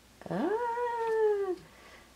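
A woman's drawn-out 'uhhh' of surprise: one long vocal sound that slides up in pitch, then sinks slowly and stops about a second and a half in.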